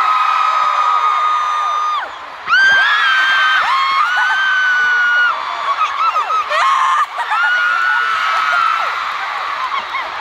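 Stadium crowd of fans screaming, with long high-pitched screams from those close by rising and falling in overlapping waves. There is a brief lull about two seconds in.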